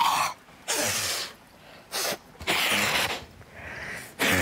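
A woman snorting air out hard through her nose in several short, forceful blasts, trying to expel a cockroach lodged up her nostril.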